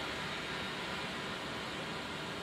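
Soft breath blown through a Selmer alto saxophone without enough lip pressure to set the reed vibrating: a steady airy hiss with no note. It shows that breath alone, without embouchure pressure, makes no tone.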